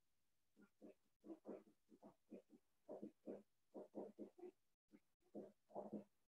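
Whiteboard marker squeaking and rubbing on the board in short, irregular strokes as an equation is written, two or three strokes a second, faint.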